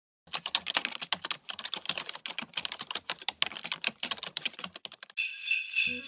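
Rapid, irregular clicking of computer keyboard typing, about ten keystrokes a second. Near the end it stops and a high, shimmering jingle chime comes in.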